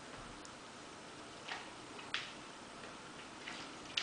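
A golden retriever sniffing at a wall: a few faint, short sniffs spaced out, with a sharp click about two seconds in.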